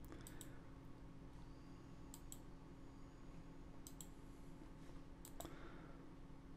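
Computer mouse button clicking, faint: four pairs of quick clicks spaced about one and a half to two seconds apart, over a low steady hum.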